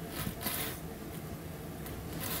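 Faint handling noise from fingers pressing a small glass mosaic piece into epoxy clay in a metal pendant mount. Two soft rubbing rustles come in the first second, then it goes quiet.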